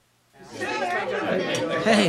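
Near silence, then about a third of a second in, several voices chattering at once.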